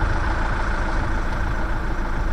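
Delivery van's engine idling with a steady low rumble.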